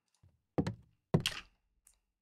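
Two high-heel footsteps on a timber floor, played back from a Foley sound-effects file. They come as two short, sharp knocks a little over half a second apart.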